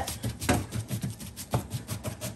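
Gloved hand patting and rubbing seasoning into raw chicken breasts on a plastic cutting board: a run of soft, wet slaps and rubs, a few each second.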